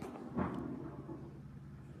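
Quiet room tone with a faint low hum and one soft, brief sound about half a second in; no whistle sounds yet.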